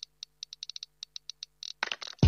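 A dozen or so light, quick clicks at irregular spacing over a faint steady hum.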